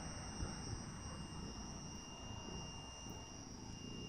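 Faint night ambience: a steady, high-pitched insect chorus of several unbroken tones, over a low uneven rumble.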